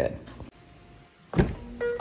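A car engine started with the push-button: a sudden start about a second and a half in, then a low steady run. Music comes in near the end.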